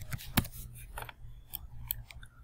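About half a dozen sharp clicks from a computer keyboard and mouse, spread irregularly over the two seconds, over a faint low hum.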